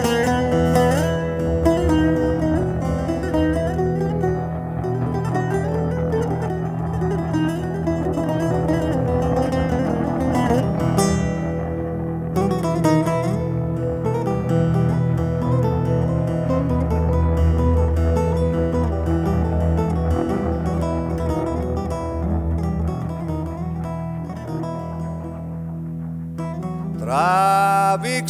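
Live band music: an instrumental passage led by plucked string instruments over a steady low bass line, with a singing voice coming in right at the end.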